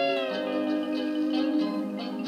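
Hawaiian steel guitar music playing from an LP, the steel guitar sliding down in pitch at the start over held chord notes.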